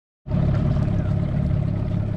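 Outboard motor of a small aluminium tinny running steadily, a low drone with a steady hum above it.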